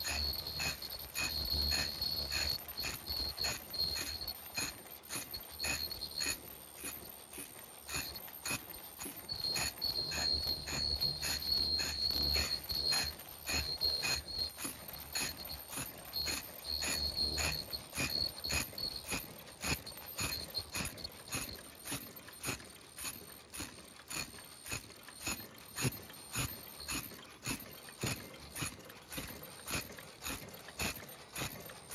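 Automatic face-mask making and packaging machines running, with a steady rhythm of mechanical clicks about twice a second. A high-pitched whine and a low hum come and go over the first half.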